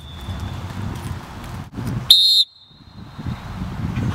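Lifeguard's whistle: one short, loud, high-pitched blast about two seconds in, leaving a faint ringing tone, over a low background rumble.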